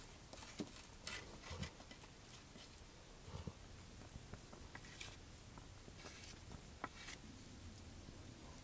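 Faint scattered taps, clicks and light sticky smearing as melted pine pitch on a stick is dabbed and spread onto wooden bow pieces, with quiet rustling in between.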